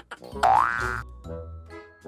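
A cartoon comedy sound effect: a bright rising pitch glide about half a second in, over light jingly background music with short bass notes.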